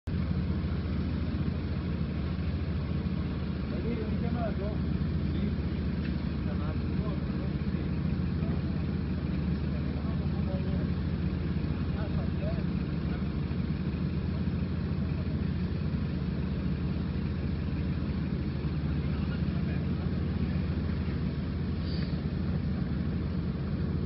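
Steady low drone of engine and road noise from inside a moving car, with faint voices in the background.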